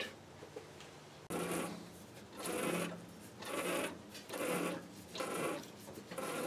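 Threading die cutting an external thread on a brass rod held in a lathe chuck, the chuck turned by hand: a rasping scrape repeated about once a second, starting a little over a second in.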